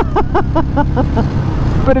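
A man laughing in a quick run of short ha's for about a second, over the steady low running of a 2013 Royal Enfield Classic 500's single-cylinder engine cruising on the road.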